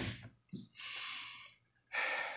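A man's audible breath, close to the microphone, lasting under a second, just after a small mouth click.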